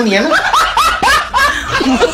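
A person laughing: a quick run of short laughs, about four a second.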